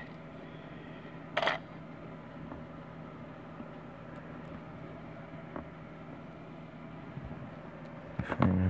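One sharp click about a second and a half in, a small hard object knocking on the workbench as kit parts are handled. A couple of faint ticks follow later, over a steady low hum.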